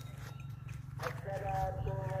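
Cattle hooves stepping on packed dirt as two cows walk, over a steady low hum. Indistinct voices come in about a second in.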